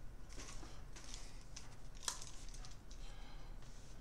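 Irregular rustling and light clicks from headphones being handled and pulled on over the head, with the sharpest click about two seconds in.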